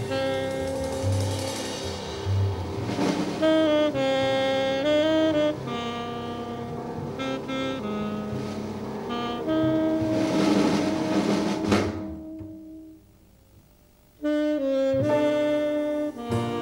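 Tenor saxophone playing long held notes in a slow, free-tempo jazz ballad, over piano, double bass and swelling cymbals. About twelve seconds in, the band dies away to near silence for a second or so, then the saxophone comes back in.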